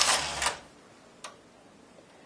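Studio 860 knitting machine carriage pushed across the metal needle bed, a noisy sliding clatter of the carriage over the needles that stops about half a second in. A single light click follows about a second in.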